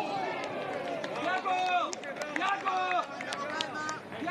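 Several people shouting and calling out in overlapping bursts, with a few short sharp knocks among them.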